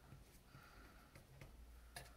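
Near silence with faint strokes of a small paintbrush spreading two-part adhesive onto a PVC repair patch, and a light tap near the end.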